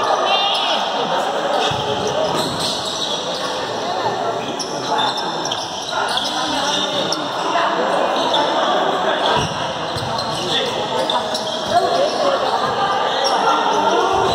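Futsal match play in a large indoor gym: the ball being kicked and bouncing on the court in scattered knocks, over players' shouts and voices that echo around the hall.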